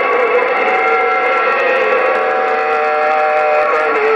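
President HR2510 CB radio speaker receiving several steady whistling tones over static. The tones overlap one another across the channel and hold their pitch for a second or more at a time.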